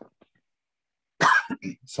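A single short cough about a second in, after a near-silent pause, followed by a man's voice picking up speech again.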